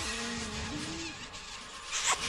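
Cartoon soundtrack effect: a steady hiss under a low held tone that steps up in pitch about halfway through.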